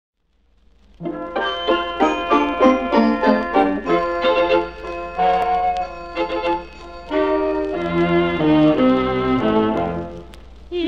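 Orchestral introduction to a late-1940s waltz song, played by a dance orchestra and beginning about a second in. No voice yet.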